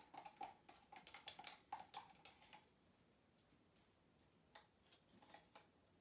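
Wooden stir stick clicking against the sides of a small plastic cup as acrylic paint is stirred: a quick run of light taps for about two and a half seconds, then a few single taps near the end.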